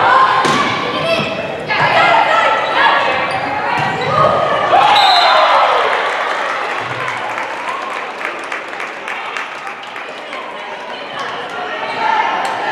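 Indoor volleyball rally echoing in a large gym: players shouting, with sharp ball hits in the first couple of seconds. A loud rising-and-falling shout of cheering marks the point being won about halfway through, then the noise settles into voices and scattered knocks.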